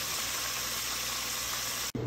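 Egg-and-flour-battered yellow bass fillets deep-frying in a pot of hot oil: a steady sizzle that cuts off suddenly near the end.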